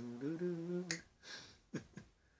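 A voice over a video call, held on one fairly steady pitch for about a second, then a sharp click, followed by two more short clicks near the end.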